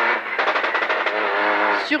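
Peugeot 208 Rally4's turbocharged three-cylinder engine running hard at high revs, heard from inside the cabin, its pitch holding fairly steady as the car pulls along the stage.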